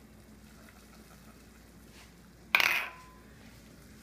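A single sharp metallic clink about two and a half seconds in, followed by a brief ringing tone: a small stainless steel prep bowl knocking against the stainless sauté pan as the shallots and garlic are tipped out.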